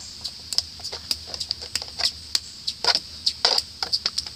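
Irregular scratching and scraping on a hard surface, a quick run of short scrapes and clicks several times a second, the loudest strokes coming about three seconds in.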